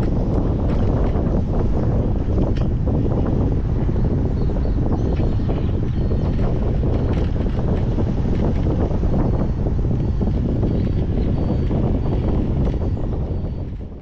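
Rushing air buffeting the camera microphone in flight on a tandem paraglider, a loud steady rumble that fades out at the very end.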